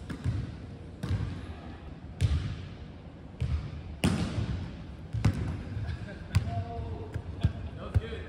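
Basketballs bouncing on a hardwood gym floor: single sharp thuds at uneven intervals, about one a second, each echoing in the large hall.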